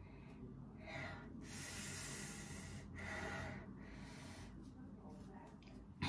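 A woman's faint breathing as she peels an adhesive bandage off a sore arm: a short breath about a second in, then a longer hissing breath out, and another short breath soon after.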